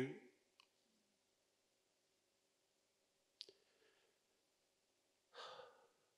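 Near silence, with a faint click about three and a half seconds in and a single short breath into a close microphone near the end.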